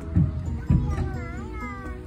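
Background music with two low thumps in the first second, then a short, wavering, high-pitched call laid over it.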